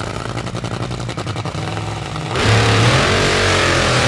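Top Fuel dragster's supercharged nitromethane V8 running with a fast, even crackle, then about two seconds in opening up for the burnout: much louder, its pitch rising and falling as the rear tyres spin.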